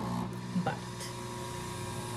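Single-serve pod coffee maker running as it brews into a tumbler: a steady mechanical hum.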